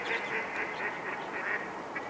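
Logo intro sound effect: a rapid run of short pitched calls, each bending up and then down, about four a second.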